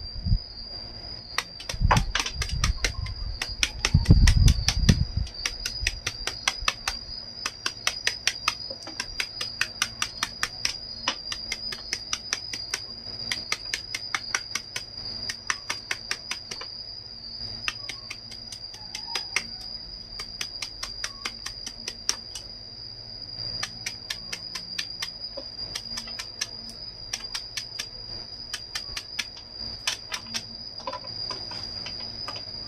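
A kitchen knife chopping quickly into a fresh bamboo shoot held in the hand, cutting it into thin slivers: light sharp clicks about four or five a second, in runs with short breaks, and a few heavier knocks in the first five seconds. A steady high cricket trill runs behind.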